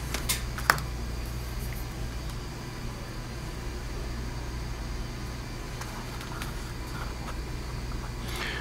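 Steady low hum of room noise, with two light taps in the first second as the flexible girder plate is handled on the tabletop, and a few faint ticks later.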